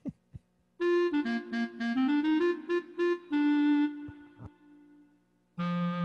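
Lowrey home organ playing a short single-note melody on its clarinet voice over a held low note, starting about a second in. It stops for about a second, and a new phrase with fuller chords begins near the end.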